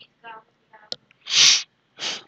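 A man's short, loud burst of breath noise close to the microphone about two-thirds of the way in, with a weaker one right at the end. A faint murmur of voice and a single click come before it.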